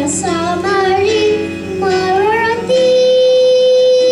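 Two children singing into microphones over musical accompaniment: a few wavering sung phrases, then one long held note from about two-thirds of the way through.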